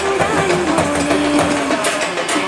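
A street band's drums beating at about two beats a second under a held, wavering melodic tone, over a noisy street crowd.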